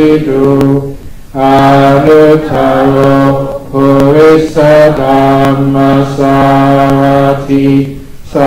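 Buddhist chanting in Pali: a low male voice reciting on a near-steady pitch, with short pauses for breath about a second in and at the end.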